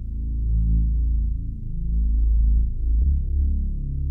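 Dark synthesizer score: deep held bass notes that swell and shift pitch about once a second.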